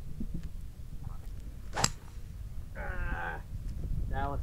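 A 3-wood striking a golf ball out of the rough: one sharp click about two seconds in, the shot caught clumsily and heavy. A short wavering voice-like call follows about a second later.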